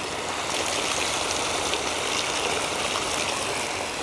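Clear filtrate water spraying out in many fine jets through the permeable fabric of a geotextile dewatering tube and splashing down, a steady rush of falling water. It is the water draining off pumped wetland sludge, with the black sediment held inside the bag.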